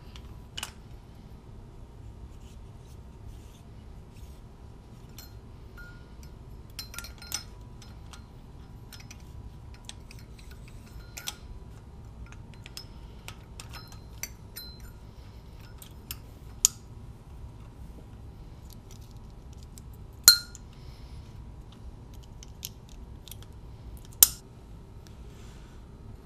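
Light metal clicks and clinks as rocker arms on their shaft are set by hand onto the intake side of an aluminium cylinder head, with two sharper clinks in the last few seconds, over a low steady hum.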